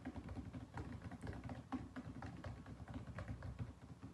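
Fingertips of both hands tapping rapidly on a polished tabletop, a quick uneven patter of light taps that stops shortly before the end.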